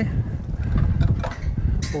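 Gusty wind buffeting the microphone, a loud uneven low rumble.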